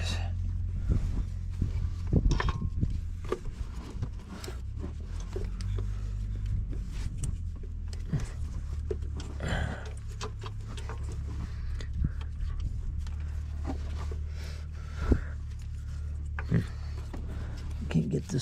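Scattered light metal knocks and clicks as parts are handled and pushed around in a truck diesel engine's fuel-pump area, over a steady low hum.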